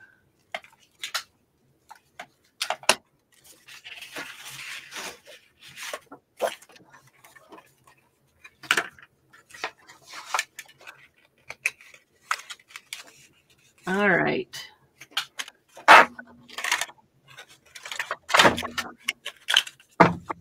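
A handheld paper circle punch being worked along a sheet of patterned cardstock, giving sharp clicks and clacks between paper rustling. There is a longer stretch of rustling about four seconds in.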